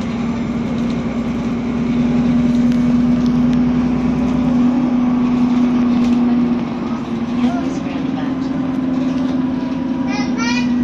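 Alexander Dennis Enviro 400 double-decker bus on the move, heard from inside the passenger saloon: a steady engine drone over road and tyre noise. The drone grows a little louder about two seconds in, then eases and shifts slightly in pitch after about six and a half seconds.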